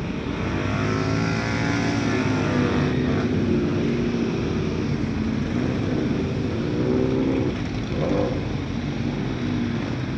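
Motorcycle engine running at low speed, close to the microphone, its pitch rising and falling twice as the throttle opens and closes.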